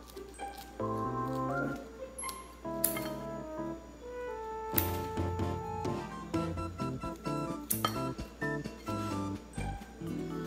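Background music: a melody of held notes, with a few sharp clicks.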